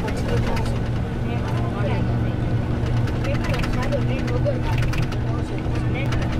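Steady low drone of a bus heard from inside the passenger cabin while it is under way, with faint voices over it.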